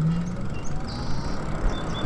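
Steady rush of wind and road noise while riding a Lyric Graffiti e-bike along a paved street.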